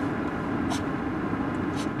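Steady low rumble and hiss, with two brief faint high hisses, one about three-quarters of a second in and one near the end.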